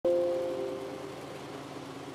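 A steady low motor hum, with a two-note tone that starts sharply and fades out over the first second.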